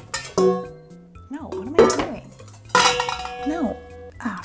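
Metal kitchenware clanking as it is handled: three sharp knocks, the loudest about two seconds in, each leaving a ringing metallic tone.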